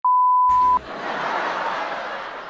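A single steady high-pitched censor bleep, just under a second long, that cuts off suddenly: a swear word bleeped out. A faint even hiss of background noise follows it.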